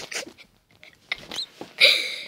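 Breathy laughter trailing off, a short pause, then a sharp breathy snort or exhale near the end.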